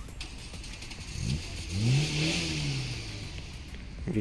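A motor vehicle passing: its engine note climbs, peaks about two seconds in and falls away, with road hiss swelling and fading along with it.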